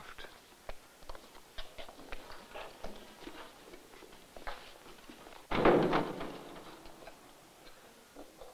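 Faint footsteps and small knocks as people walk through a stone doorway. About five and a half seconds in, a sudden louder noise fades away over a second or two.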